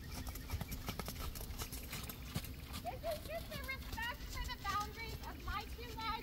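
Horse trotting on sand footing: the hoofbeats come as a run of soft, even knocks.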